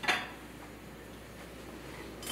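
A brief clink of a metal spoon against a stainless steel pan or bowl, then low steady kitchen background noise.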